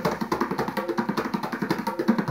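Tabla played by hand: a fast, steady run of short ringing strokes on the drums, several a second.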